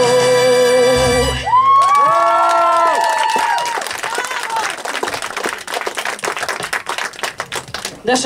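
A girl's sung note, held with a wavering vibrato over accompaniment, ends about a second in. The audience then breaks into whoops and cheers, with applause that thins out toward the end.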